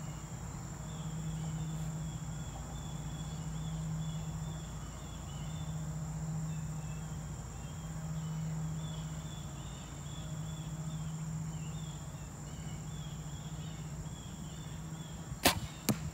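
Compound bow shot: a sharp crack of the string on release about fifteen and a half seconds in, then a second, softer crack less than half a second later as the arrow hits the target. Before that, a low hum swells and fades every couple of seconds, with insects chirping throughout.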